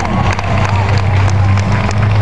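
Jet ski engine running at speed, a steady low drone, with crowd noise around it.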